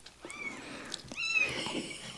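Newborn kitten mewing: two short, high-pitched mews about a second apart.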